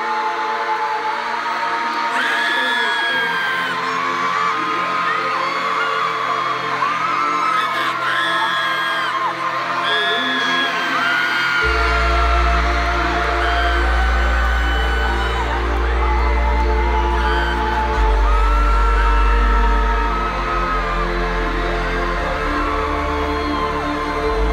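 Live arena concert: steady held music notes from the PA under a crowd of fans screaming and whooping. A heavy deep bass comes in about halfway through.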